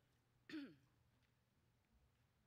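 One short throat-clear with a falling pitch about half a second in, against near silence.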